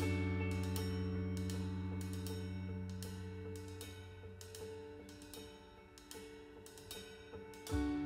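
A Fazioli grand piano chord rings and slowly fades, with soft single notes and light cymbal taps over it. Near the end the full trio comes back in with a loud hit.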